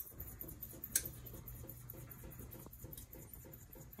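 Salt shaker shaken over a saucepan of pesto: a soft, rapid, even patter of shaking, with a sharp click about a second in.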